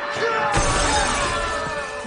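A glass stepping-stone pane shattering under a player's weight: a loud crash about half a second in that lingers for over a second, over dramatic music.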